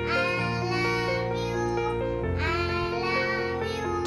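A young girl singing a song over instrumental accompaniment, in two sung phrases with a short gap between them.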